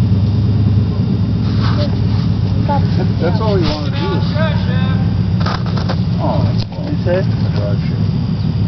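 Big-block V8 of a lifted half-ton mud truck running steadily at low revs.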